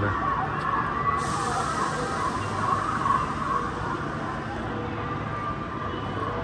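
Outdoor crowd background with faint distant voices. A thin high hiss starts about a second in and stops suddenly about three and a half seconds later.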